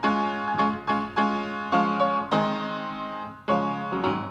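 Piano playing a hymn accompaniment with no voices: chords struck about every half second, each dying away, then one longer held chord and a fresh strike near the end.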